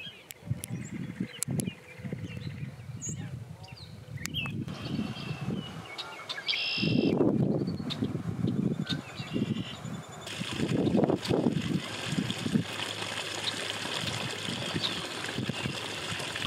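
Outdoor ambience with small birds chirping, over an irregular low rumbling noise that swells twice.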